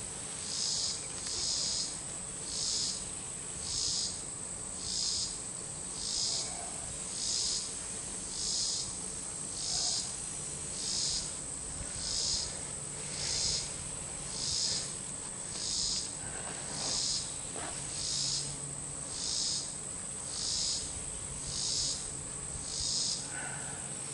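Chorus of insects shrilling high in a steady pulsing rhythm, about one to two pulses a second.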